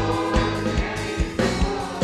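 Live gospel worship music: a choir singing over electric guitar and drums, with a steady beat.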